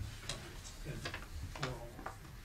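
A few faint, irregular clicks or taps in a quiet room, with a brief low murmur of a voice about three-quarters of the way through.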